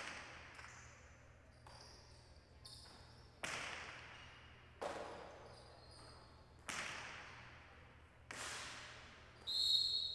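Jai alai rally: the hard pelota cracking against the walls of the court and off the players' wicker cestas, about five loud hits a second or two apart, each ringing out in a long echo, with fainter knocks between. Short high squeaks come in around the third second and a brief high squeal just before the end.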